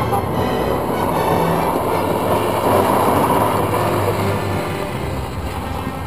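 A car's engine running hard while its tyres slide over loose gravel: a dense rumbling noise that swells toward the middle and eases off near the end.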